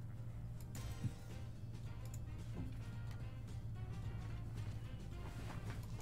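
Online slot game's background music playing steadily and quietly, with faint ticking effects over it.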